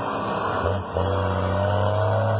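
Mercedes-Benz 1620 truck's six-cylinder diesel pulling through a straight-pipe exhaust with a steady low note. About half a second in it drops away briefly for a gear change, then comes back on load, its pitch slowly rising.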